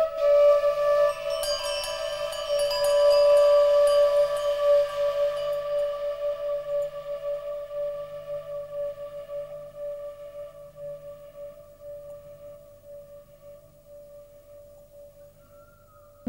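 A struck singing bowl ringing out on the soundtrack: one steady low tone with higher overtones, shimmering higher tones joining about a second in, the whole slowly fading away.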